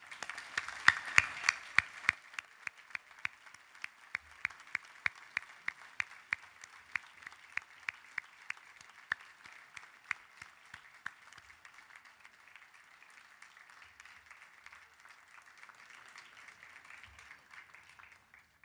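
Audience applauding, with sharp single claps close to the microphone standing out for the first eleven seconds or so, loudest in the first two seconds, then steadier, softer applause.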